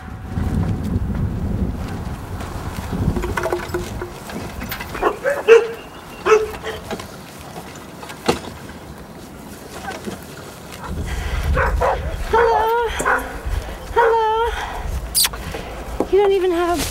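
A dog barking in short calls, a few about five to six seconds in and a run of them near the end, over a low rumble.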